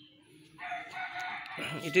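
A rooster crowing: one long, drawn-out call starting about half a second in.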